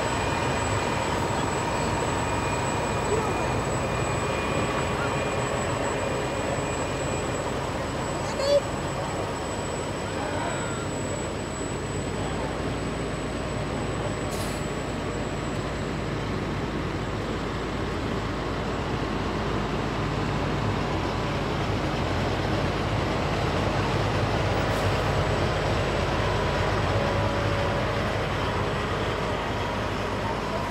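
Diesel engines of concrete mixer trucks running as they roll slowly past. The low rumble grows louder through the second half as a truck approaches and passes close by. A short sharp sound is heard about eight seconds in.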